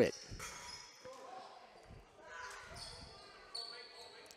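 Faint, reverberant gym ambience between volleyball rallies: distant voices of players and spectators and a few soft ball thumps on the hardwood floor. A faint high steady tone comes in near the end.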